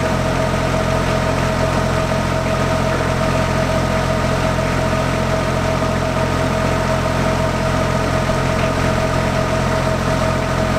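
Engine idling steadily: a constant low hum with a thin, steady whine above it.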